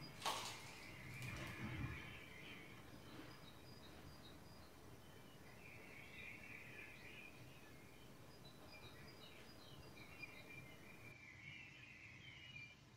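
A crisp bite into a deep-fried samosa just after the start, with a second or so of crunching as it is chewed. The rest is faint, with small bird chirps coming and going.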